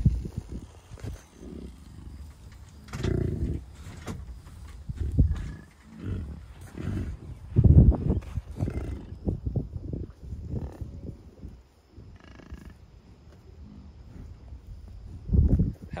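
Bison grunting: a series of low grunts a few seconds apart, the loudest about eight seconds in.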